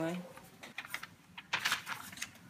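The tail of a spoken word, then scattered light clicks and taps of packaging being handled, with a quick run of them about a second and a half in.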